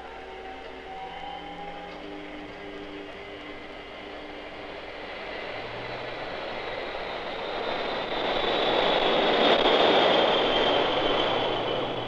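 Jet aircraft noise swelling to a peak about nine to ten seconds in, then easing, with a high whine slowly falling in pitch.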